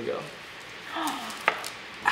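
A kitchen knife cutting through a soft cotton candy and ice cream burrito, with one sharp knock about one and a half seconds in.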